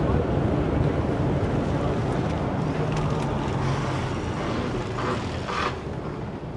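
Steady low drone of a lorry's diesel engine and road noise inside the cab as it moves off.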